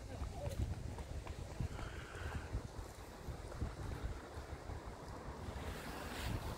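Wind buffeting a phone's microphone outdoors, an uneven low rumble, with faint street sound behind it.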